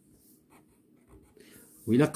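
Faint scratching of a felt-tip marker pen writing a digit on a paper textbook page, with a man's voice starting near the end.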